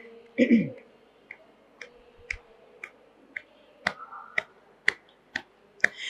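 A brief falling vocal sound, then faint sharp clicks in a steady beat, about two a second, keeping time in the pause between lines of a devotional chant.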